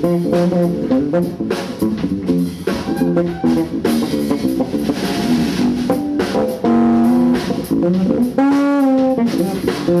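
A live blues band playing: an electric bass guitar with a drum kit and cymbals, with a held, bending note near the end.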